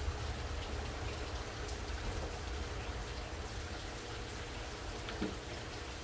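Water from a vertical aquaponics tower system trickling and splashing steadily into its grow bed and tank, a rain-like patter, with a light knock about five seconds in.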